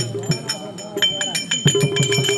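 Therukoothu folk-theatre accompaniment: a drum beats a steady rhythm while small metal cymbals clink bright and sharp over it.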